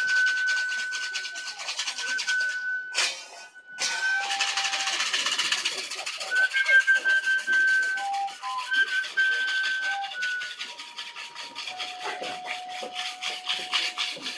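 Metal washboard scraped in a fast, even rhythm, with a short break about three seconds in. Over it a pure, whistle-like tone holds long notes of a simple tune, stepping between high and lower pitches.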